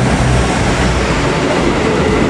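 A diesel express train, a KiHa 85 railcar set, running out of a station platform past close by. Its steady, loud rolling noise and low engine hum thin out as the last car goes by.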